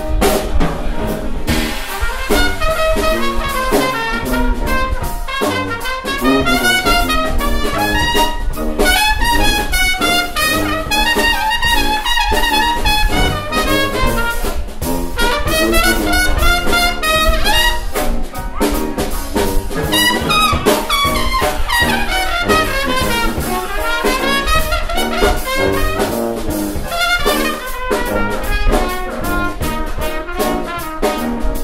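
Traditional jazz band playing an instrumental passage, with cornet and trombone lines out front over piano, sousaphone and a drum kit keeping a steady beat.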